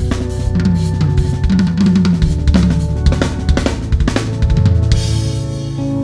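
Rock drum kit played live at full power: fast, dense snare, kick-drum, tom and cymbal hits under the band's sustained notes. About five seconds in, the drumming stops and the band's notes ring on.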